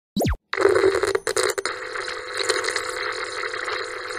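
Intro sound effect: a quick falling-pitch sweep, then steady buzzing, crackling static like a glitching old television set.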